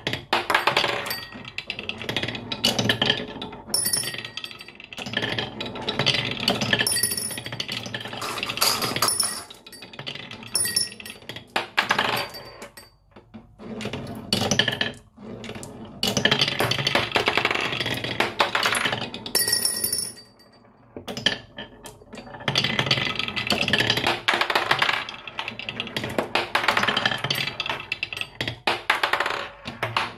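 Glass marbles rolling along a wavy-grooved wooden marble-run track with a continuous rattling roll, and now and then a ringing clink as marbles knock into each other. The rolling drops away briefly a few times as one run ends and the next begins.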